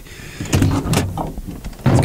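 A single sharp clunk about halfway through, over a low rumble, heard from inside a pickup's cab: a rock being dropped into the truck bed.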